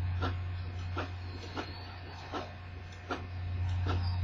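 HP Officejet 7500A inkjet printer printing the second side of a card-stock sheet. Its print-head carriage makes a short clack about every three-quarters of a second, over a steady low hum.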